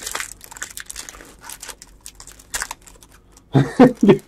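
Foil wrapper of a trading-card pack being torn open and crinkled by hand, a run of irregular crackles.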